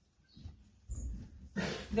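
Pony in the stall: a low thud about halfway, then a loud breathy snort near the end.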